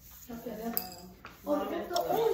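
Indistinct, low voice with a light clink about three quarters of a second in.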